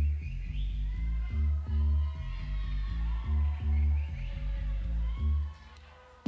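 Live techno music: a deep synth bass line pulsing in long, regular notes, with higher gliding synth lines above it. The music drops away near the end.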